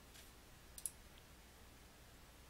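A single computer mouse click a little under a second in, against near silence.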